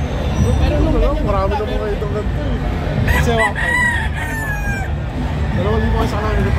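A gamefowl rooster crowing once about halfway through, the call drawn out at its end, over a steady low crowd hum.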